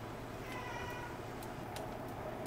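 A single short meow-like cry, lasting under a second, about half a second in, followed by two light clicks near the end.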